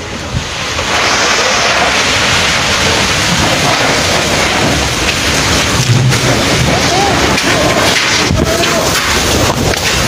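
Tornado-force wind and driving rain, a loud steady rush that swells about a second in, heard from inside a shop through its glass front.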